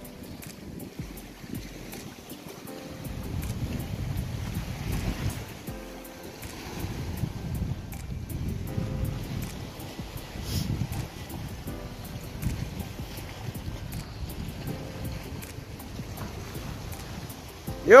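Wind rumbling on the microphone and the sea washing against the rocks, with faint music in the background.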